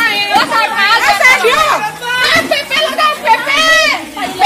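Several young women's voices talking and shouting over one another, excited and loud, with no single speaker standing out.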